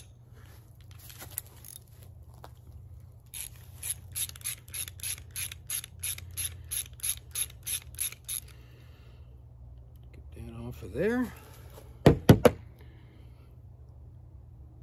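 A ratchet wrench with an 11 mm socket clicking about three times a second for about five seconds as it is worked on a nut. Near the end comes a short grunt, then three loud, sharp knocks.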